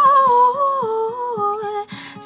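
A woman's voice holding a sung line whose notes step down in pitch, over fingerpicked acoustic guitar with a steady bass pulse of about four notes a second.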